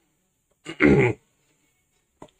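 A man clears his throat once, briefly, a little after half a second in; the rest is silence.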